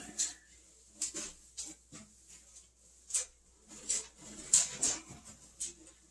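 Pine-flake wood shavings rustling and scratching in short, irregular bursts as hands spread the bedding around the floor of a wooden crate.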